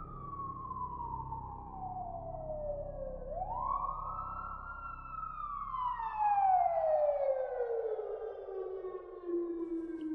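Police car siren wailing. The pitch falls slowly, rises quickly about three seconds in, then falls in a long slide that settles at a low, steady pitch near the end, over a faint low rumble.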